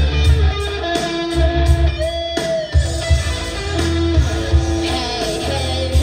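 Electric guitar played live, with held lead notes high on the neck and a slight bend about two seconds in, in a rock song. A low, pulsing beat runs underneath.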